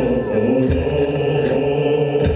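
Soundtrack music of a castle projection show, with a choir chanting long held notes.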